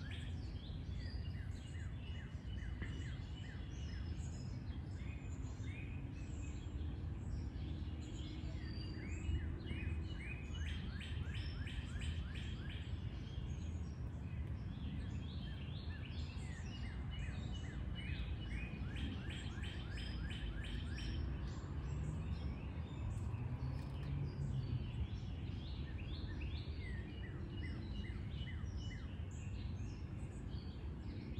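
Birds chirping and calling in the background, with a quick run of repeated notes about ten seconds in, over a steady low outdoor rumble.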